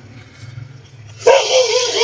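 An animal's drawn-out, wavering call, starting just over a second in after a quiet moment.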